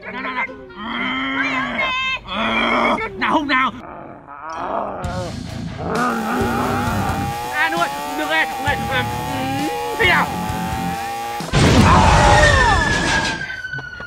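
A person's voice imitating a bull with grunts and roars, over music and added sound effects. A long, slowly rising tone leads into a loud rush of noise near the end, with falling tones over it.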